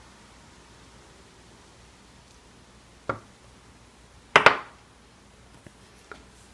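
Quiet room tone broken by two knocks of hard objects on a workbench: a light knock about three seconds in, then a louder, sharper double clack about a second and a half later.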